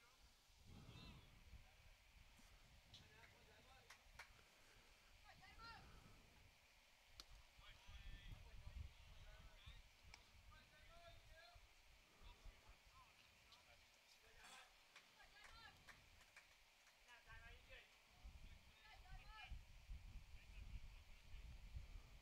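Near silence with faint distant voices and a few faint clicks.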